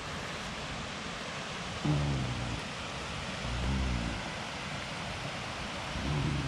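A man humming low, two short hummed notes about two and four seconds in, over a steady rushing hiss.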